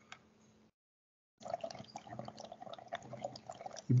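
Exhaled breath blown through a Frolov breathing device, bubbling through the small amount of water in its cup: a fairly faint, irregular crackle of small bubbles that starts about a second and a half in.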